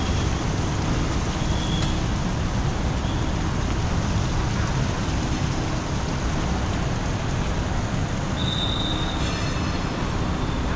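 Steady rumble of city street traffic, with a short high squeal about two seconds in and another near the end.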